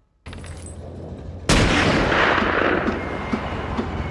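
War-film battle sound: a low rumble, then a sudden loud burst of gunfire and explosion noise about a second and a half in that keeps going.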